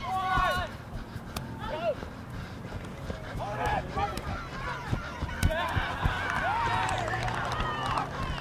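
Players shouting and calling to each other across a rugby league field in short, scattered calls, with a faint steady low hum underneath.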